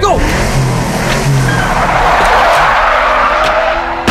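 A car pulling away hard with its tyres skidding and screeching on the road, a loud steady rush that cuts off abruptly at the end.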